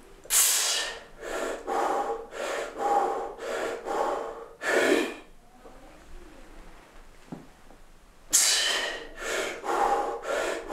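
A man breathing hard under a heavy barbell back squat. A loud gasping breath comes just after the start, then quick forceful breaths about two a second, another loud gasp near the middle, a few quiet seconds, and a loud gasp and quick breaths again near the end.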